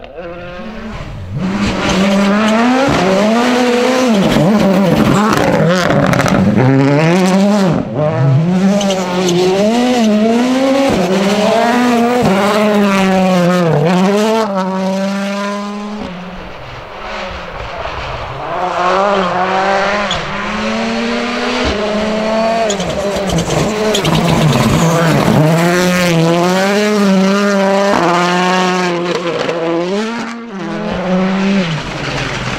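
Ford Fiesta Rally1 rally car's turbocharged four-cylinder engine, driven hard on a gravel stage. Its pitch climbs and drops sharply again and again with each gearshift and lift-off. The sound fades about halfway through, then builds again as the car comes closer.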